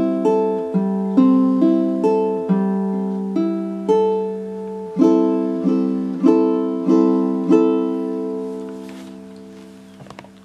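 Baritone ukulele strung in low G-C-E-A tuning, played as a run of plucked chords about two a second. The last chord rings out and fades away over the final two seconds.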